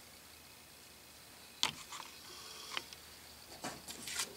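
Quiet room tone with a few faint clicks, the sharpest about a second and a half in, and a brief faint whir a little after two seconds.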